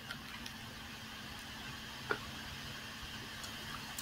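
Quiet room tone with a faint steady hum and a few soft clicks, one a little louder about two seconds in.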